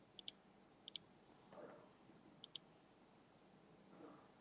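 Computer mouse button clicking: three quick pairs of faint, sharp clicks, spread over a few seconds.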